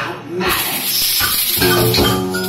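Live band music: guitar playing with a voice at the microphone. The sound thins briefly near the start, then the full band comes back in about half a second in.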